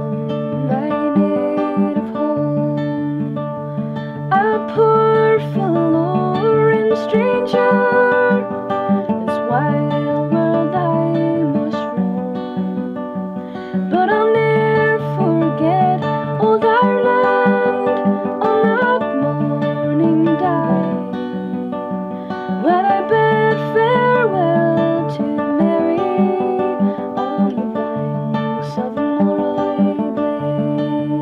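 A woman singing a slow song to her own acoustic guitar. The sung phrases pause briefly a few times while the guitar carries on.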